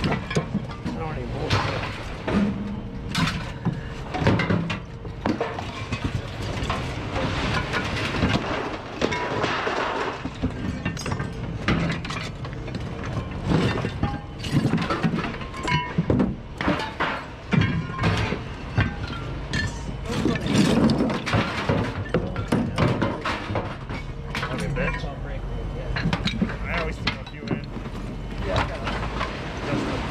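Pieces of scrap metal clanking and knocking as they are handled and thrown onto a scrap heap, with many irregular sharp knocks.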